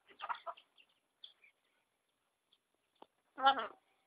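A blue macaw making a quick run of short calls right at the start, with a few faint chirps after. About three and a half seconds in comes a short laugh, the loudest sound.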